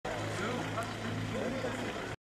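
Faint, indistinct voices of a crowd of onlookers over a steady low hum.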